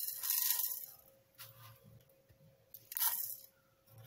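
Coriander seeds dropped by hand onto raw peanuts in a steel pan: a brief rattling patter at the start, then two shorter rustles about one and a half and three seconds in.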